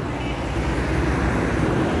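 Steady road traffic noise from passing cars and vans.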